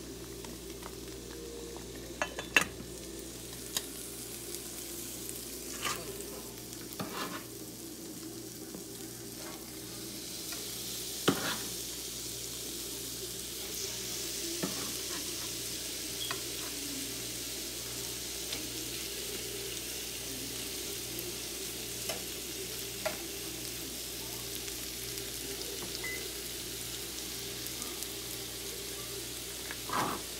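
Salmon fillets and shrimp sizzling in oil in a nonstick frying pan, the sizzle growing louder about ten seconds in. A few sharp knocks of cookware sound in the first dozen seconds.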